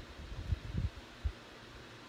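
Handling noise as a card layer and tulle ribbon are worked on a craft table: three soft low thumps in the first half, then only a faint steady hiss.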